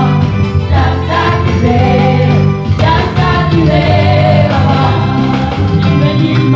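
Gospel worship team of several singers singing a praise song together into microphones, over instrumental accompaniment with a steady bass line.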